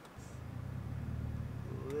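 Infiniti G35 coupe's V6 engine, heard from inside the cabin, drawing a low drone that comes in just after the start and grows steadily louder. The driver is feeding in gas and letting out the clutch to pull away from a stop on a hill, with the car a little shaky on too little throttle.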